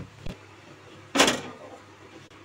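Cookware being handled on a steel stovetop: a light click as a glass lid is set on a pot, then about a second in one short, loud clatter of metal cookware.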